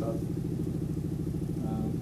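A steady low hum with a rapid, even pulse, like a small motor running; a voice starts up near the end.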